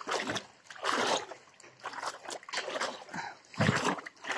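Wading steps through floodwater: a splash and slosh with each stride, about one a second, the heaviest near the end.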